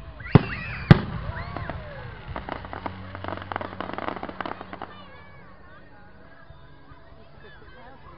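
Aerial fireworks: two sharp bangs of shells bursting about half a second apart near the start, followed by a rapid run of crackling from the bursting stars that dies away about five seconds in.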